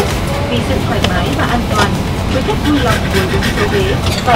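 Airliner cabin noise: a steady low rumble of engines and air, with voices talking faintly under it.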